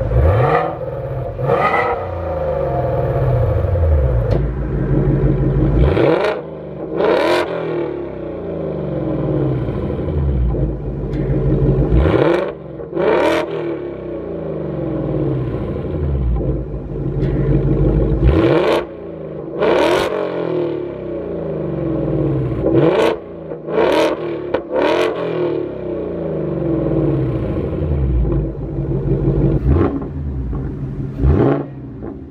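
2024 Ford Mustang GT's 5.0 V8 idling through a new Corsa cutback exhaust, blipped repeatedly in short rev bursts, often in pairs, each climbing sharply and falling back to idle. The exhaust is in quiet mode first and in sport mode later on.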